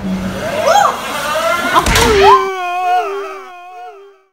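Excited, alarmed shouting and yelling with a sharp smack just before two seconds in, then a long drawn-out yell that fades away.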